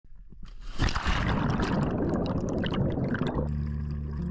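Water splashing and gurgling close to the microphone at the lake surface, full of small bubbly clicks. About three and a half seconds in it gives way to background music with held notes.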